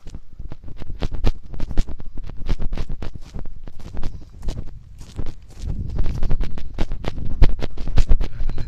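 Footsteps of someone walking on a rough path while holding the recording phone, a dense run of irregular crunches and clicks, with a low rumble on the microphone from about six seconds in.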